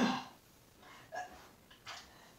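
A woman's short, breathy grunt of effort right at the start, then two fainter breaths, as she works through standing leg-raise physical therapy exercises.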